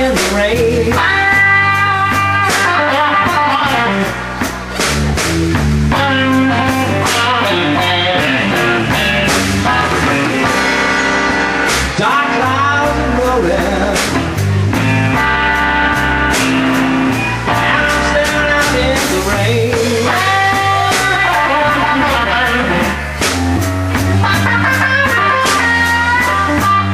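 Live blues-rock trio playing: electric guitar lead lines over a Fender electric bass and a drum kit, with a steady run of cymbal strikes.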